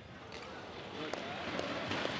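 Badminton rally: a few sharp racket strikes on the shuttlecock and players' footwork on the court, with voices rising as the rally ends.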